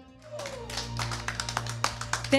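Small group applauding with a dense patter of claps that starts just after the last held note of a song stops.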